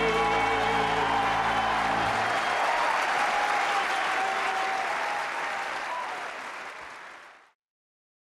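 The live orchestra's final held chord ends about two seconds in, giving way to audience applause, which fades out and stops shortly before the end.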